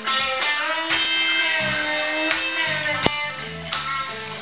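Live rock-country band playing with a Telecaster-style electric guitar to the fore, holding and bending notes over bass and drums. There is no singing, and one sharp drum hit comes about three seconds in.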